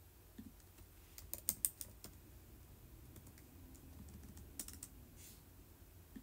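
Light typing clicks in two short flurries, one about a second in and a shorter one near five seconds, over a faint steady low hum.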